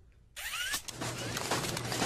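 Cartoon machinery sound effects that start suddenly about a third of a second in: a steady mechanical clatter of rapid clicks over a low hum, with short rising chirps.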